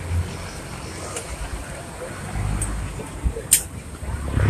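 Street background noise: a low rumble that grows louder about halfway through, with faint indistinct voices and one sharp click near the end.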